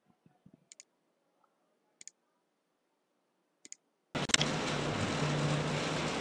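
Three faint, sharp clicks over near silence, then, about four seconds in, a steady hiss with a low hum starts suddenly, like an audio line or microphone feed opening.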